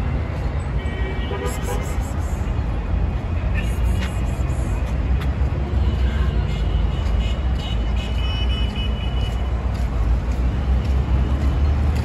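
City street ambience: a steady low rumble of traffic with indistinct voices of people nearby.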